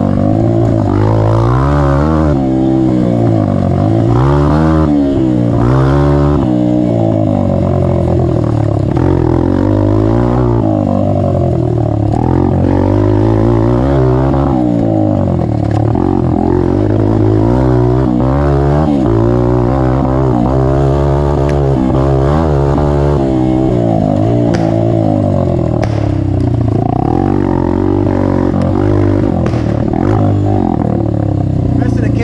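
Honda CRF150F's single-cylinder four-stroke engine, its exhaust baffle removed, being ridden hard: the revs rise and fall over and over with throttle and gear changes.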